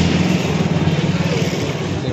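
A motor vehicle engine running steadily close by, a low even hum with a noisy background.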